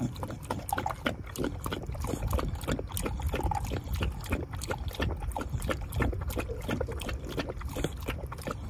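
An American pocket bully puppy lapping water, its tongue making a quick, steady run of wet laps several times a second.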